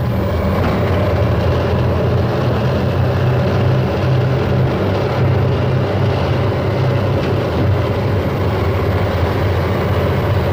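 Diesel engines of large wheeled motor scrapers (wheel tractor-scrapers) running steadily under load as they work through sand, a loud, even, deep drone.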